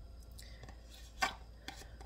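A few short knocks and taps from food preparation on a kitchen counter, the loudest a little past halfway.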